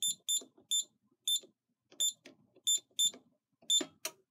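Scantronic SC-800 alarm keypad beeping as its keys are pressed to enter a code: eight short, high-pitched beeps at uneven intervals, each with a faint tap of the button.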